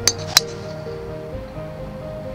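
Metal driver head striking a golf ball: two sharp, ringing clinks near the start, the second louder, over background music.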